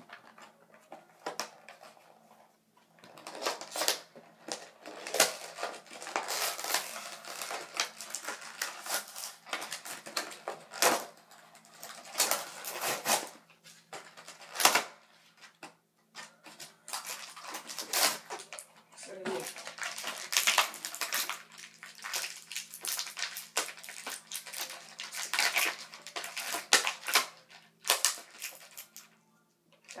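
Product packaging being handled and opened by hand: a long run of irregular crinkling, crackling and sharp clicks as the box and plastic are pulled and torn.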